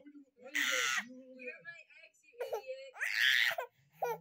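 A toddler's playful high-pitched screeches, two loud short ones, about half a second in and near the end, with quieter voice sounds between them.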